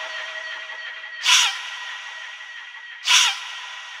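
Electronic dance track in a stripped-back breakdown with no bass or drums: a sustained high synth tone, with a noisy whooshing hit that falls in pitch sounding twice, about two seconds apart.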